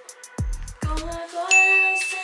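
A hip-hop beat with deep, booming bass-drum hits stops about a second in. A bright, bell-like ding follows halfway through, the edited sound effect that marks a point scored. A held melodic note sounds beneath the ding.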